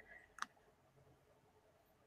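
Near silence, with one short click about half a second in.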